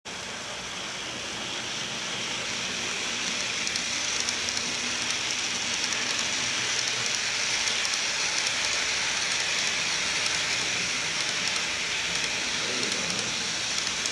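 Model freight train of container wagons running past on the layout track: a steady hiss and rumble of wheels on the rails that builds up over the first few seconds as the train comes near, then holds.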